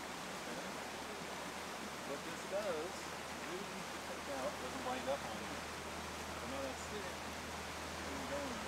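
Steady rushing of a creek, with faint, indistinct voices talking over it a couple of seconds in.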